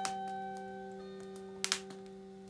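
A single note plucked on a lyre (Leier) tuned to 432 Hz rings and slowly fades over notes still sounding from before. Burning firewood gives two sharp crackles close together near the end.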